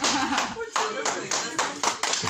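A few people clapping in uneven claps, roughly three a second, with voices underneath.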